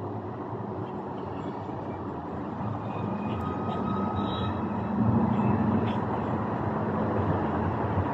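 Outdoor street background noise: a steady rumble of traffic that swells a little towards the middle, with a low engine hum as a vehicle goes by about five seconds in.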